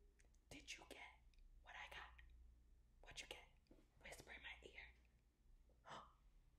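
Faint whispering in four or five short phrases, with a pause between each.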